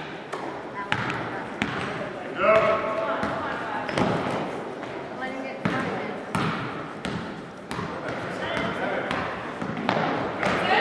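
Basketball bouncing on a hardwood gym floor during a game, a series of irregular sharp thuds, with voices of players and spectators calling out.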